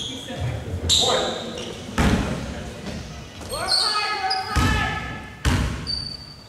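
A basketball bounced on a hardwood gym floor by a shooter at the free-throw line: a few separate, unevenly spaced bounces, the loudest about two seconds in and twice near the end, echoing in the hall.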